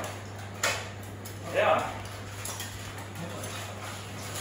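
A sharp knock about half a second in, typical of a rattan sword striking a shield or armour in heavy-combat sparring, then a short shout a second later, over a steady low hum.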